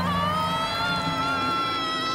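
A woman's long, high-pitched scream, rising slightly at first and then held on a steady pitch.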